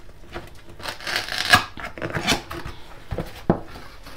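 Cardboard gift box being opened by hand: irregular rustling and scraping of the lid and flaps, with two short knocks near the end.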